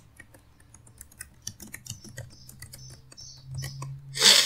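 Typing on a computer keyboard: a quick, irregular run of light key clicks as a short line of text is typed, over a faint steady low hum.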